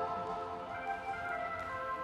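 Background music: soft sustained chords.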